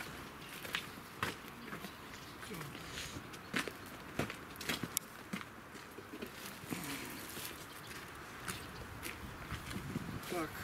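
Footsteps: irregular scuffing steps of someone walking across a yard, heard as scattered short knocks, with faint voices in the background.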